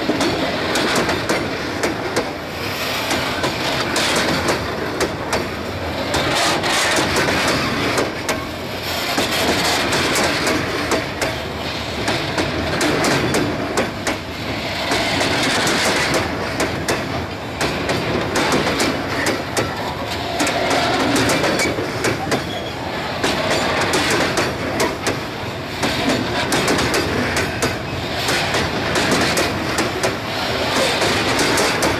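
Loaded covered hopper cars of a freight train rolling past close by, their steel wheels clattering steadily over the rail joints.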